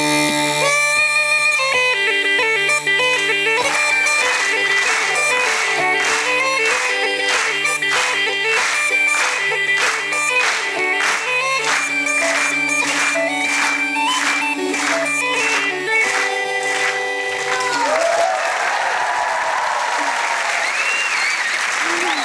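Uilleann pipes playing a lively tune: a chanter melody over a steady low drone, with a regular beat about twice a second. The tune stops about 17 seconds in, and audience applause with cheers and whoops follows.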